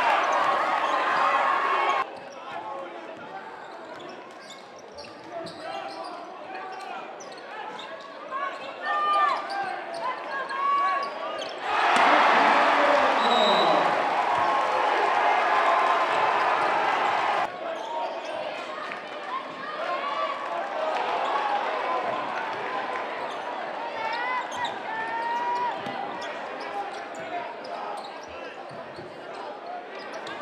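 Basketball game sound in a gymnasium: a crowd cheering loudly at the start and again for about five seconds from the middle. Both bursts cut off abruptly. In the quieter stretches between them are a ball dribbling, sneakers squeaking on the hardwood floor, and scattered shouts.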